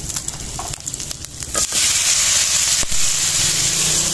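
Pork frying in a metal wok over a wood fire: a sizzle with a few sharp clicks in the first second and a half, then the sizzle turns suddenly much louder and hissier and stays so.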